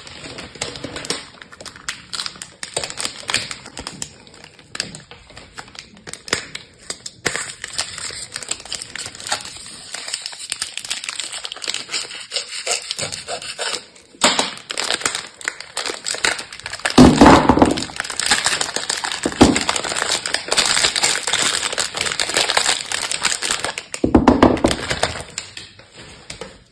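Plastic film wrapping on a multipack of bar soap being cut open and peeled away: continuous crinkling and crackling, denser and louder in the second half, with a few dull thumps.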